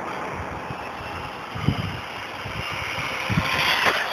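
Brushless electric motor of an OFNA GTP 1/8 on-road RC car whining at speed, the high whine climbing and getting louder toward the end as the car makes a pass, over a rushing wind rumble on the microphone with two low thumps.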